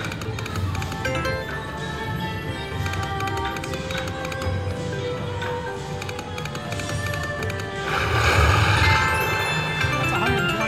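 River Dragons slot machine playing its game music and reel sound effects, with many short clicks. About eight seconds in, a louder, noisier effect sets in as the spin ends in a small win.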